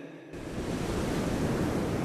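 Sea surf washing onto a beach, a steady rushing noise that begins just after the music stops.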